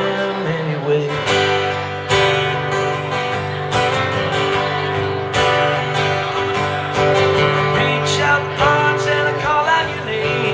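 Two acoustic guitars playing together in an instrumental break, with steady strummed chords ringing on.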